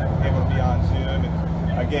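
A man speaking in short, hesitant phrases over a steady low rumble of an idling vehicle engine.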